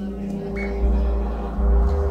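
Live laptop electronic music: sustained low drone tones over deep bass swells that grow louder near the end, with a brief high tone about half a second in.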